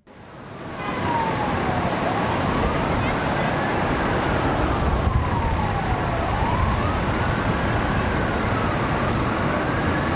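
A siren wailing, its pitch sliding slowly down and back up, over a loud steady rumble of traffic noise; it fades in over the first second.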